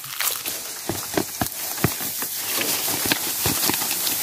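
A cassava plant being pulled up by hand: soil breaking, roots tearing loose and leaves rustling, an irregular run of crackles and snaps.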